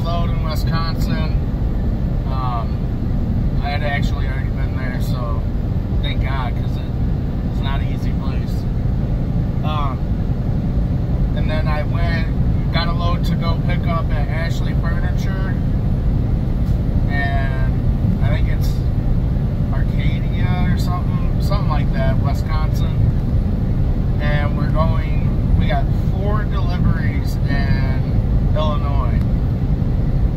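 Steady low rumble of a semi-truck's engine and road noise heard inside the cab while driving, under a man's voice talking on and off.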